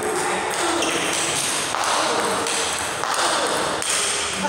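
Celluloid-type table tennis ball tapping lightly as it is bounced before a serve, in a reverberant hall.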